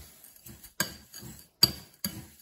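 Two sharp clinks from a glass mixing bowl of bath salts as it is handled, about a second in and again near the end, the second one louder, with soft handling sounds between them.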